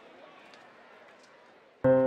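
Faint background noise fading away, then near the end a stage piano strikes a sudden chord of several notes that rings on, the opening of the song.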